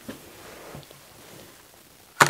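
Faint handling noise: a soft rustle with a light knock at the start and a couple of small clicks just under a second in, as hands shift a quilting ruler and pick up a rotary cutter on fabric over a cutting mat.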